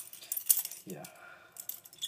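A balisong (butterfly knife) being flipped by hand: a quick run of sharp metallic clicks and clacks as the handles swing around and strike the blade.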